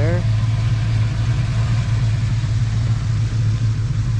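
1983 Dodge Ramcharger's engine idling, a steady low hum that holds even.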